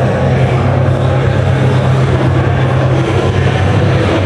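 Loud music over a sports hall's PA system, with a steady low drone under it.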